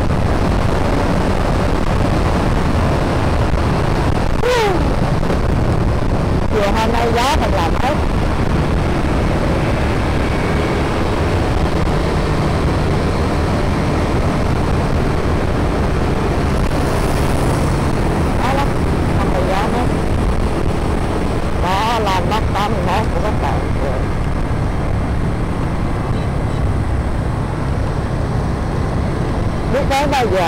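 A motorbike riding through city traffic: steady engine and road noise, heavily mixed with wind rushing over the microphone.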